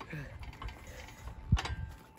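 Hands and shoes shifting on a metal playground climbing frame, with small clicks and one sharper knock about one and a half seconds in.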